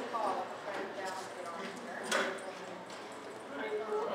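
Indistinct background chatter of people, with dog claws tapping on a hard floor as several dogs walk about.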